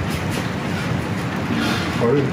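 Wood fire in an open sunken hearth, crackling steadily as a log burns on glowing embers under skewered shiitake and fish.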